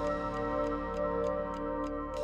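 Suspense background music: a sustained held chord under a steady ticking-clock beat, about four ticks a second.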